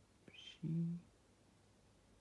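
Speech only: a man says one short word about half a second in, then quiet room tone.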